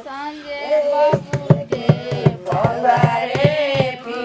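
Women singing a folk wedding song together, accompanied by a dholak played by hand; the drum strokes come in about a second in and keep an uneven beat under the held sung notes.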